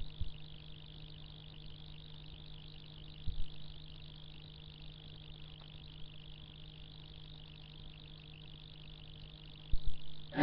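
Steady low electrical hum with faint hiss in a large room, broken by a few dull low thumps: one near the start, one about three seconds in and one near the end.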